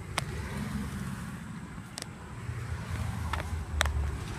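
Road traffic going past, a low rumble that swells in the second half, with a few sharp clicks over it.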